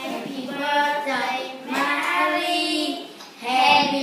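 Young children singing in English with long held notes, pausing briefly near the end.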